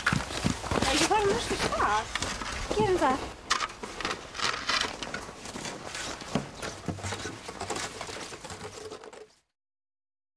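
Voices in the first few seconds, then footsteps and snow shovels scraping and knocking on packed snow in irregular strokes, until the sound cuts off abruptly about nine seconds in.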